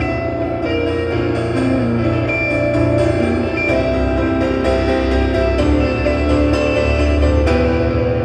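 Grand piano and electric guitar playing a slow, ambient jazz passage: many held notes ring over a steady low bass.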